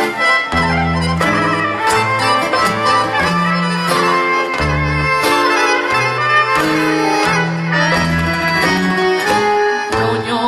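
Live sevdalinka band playing an instrumental passage: accordion and violin carry the melody over a bass line and a steady hand-drum beat.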